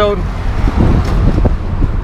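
Wind buffeting a handheld camera's microphone: an uneven, gusty low rumble.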